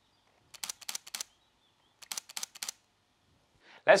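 Nikon Z50 mirrorless camera's mechanical shutter firing two short bursts of rapid clicks, about a second and a half apart.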